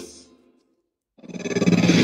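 A radio broadcast clip fading out, then a gap of dead silence of about two-thirds of a second, then the next radio station ID's music fading in and building, just before its announcer speaks.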